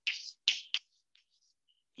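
Chalk writing on a chalkboard: about four short, high, scratchy strokes in the first second and a half, then it stops.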